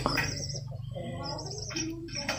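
Birds chirping: short, high twittering calls just after the start and again near the end.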